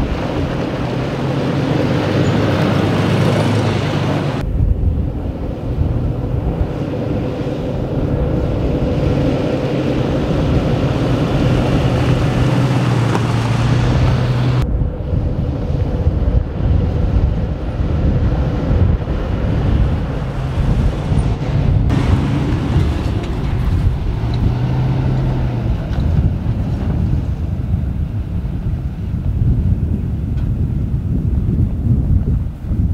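Toyota Fortuner SUV driving off-road over desert sand and gravel, its engine running with a steady low drone, with wind buffeting the microphone. The sound changes abruptly about four, fifteen and twenty-two seconds in.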